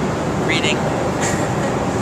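Steady rushing cabin noise of a jet airliner in flight, even in level throughout, with a brief snatch of quiet speech about half a second in.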